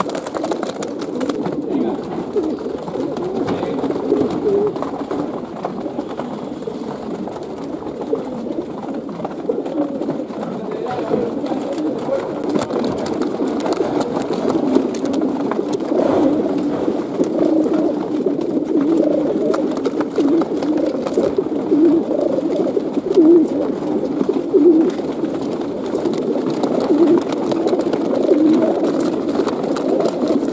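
Many racing pigeons crowded in a transport crate, cooing together in a continuous low chorus.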